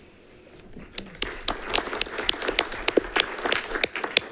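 Audience applauding, starting about a second in as many people clap at once.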